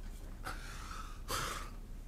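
A man breathing heavily: a long breath about half a second in, then a shorter, louder one just after.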